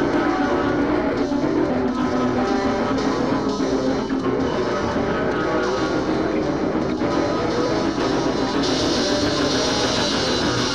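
Grunge-style rock music with electric guitar and a drum kit, steady and dense; the cymbals and high end get brighter about nine seconds in.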